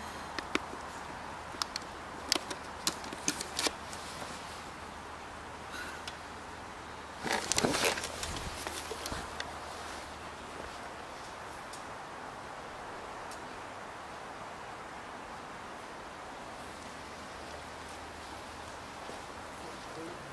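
Movement noise at night: a few scattered sharp clicks in the first few seconds, then a short, louder rustling scuffle about seven seconds in, followed by a faint steady hiss.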